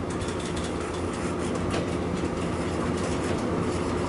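Dry-erase marker writing on a whiteboard, a run of short squeaking and tapping strokes, over a steady low rumble.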